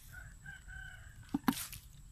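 A rooster crowing faintly, one call about a second long. Near the end come two sharp knocks close together, louder than the crow.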